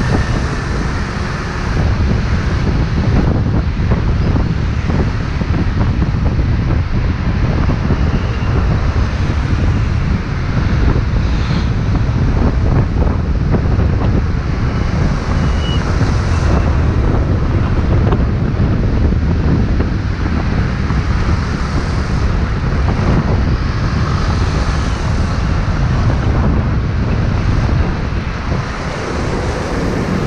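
Wind buffeting a head-mounted action camera's microphone on a moving scooter, a steady loud rumble, with the scooter's engine and surrounding city traffic beneath it.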